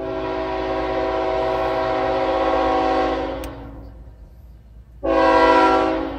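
Diesel freight locomotive's air horn sounding a chord of several notes: one long blast of about three and a half seconds, then a second blast starting about five seconds in.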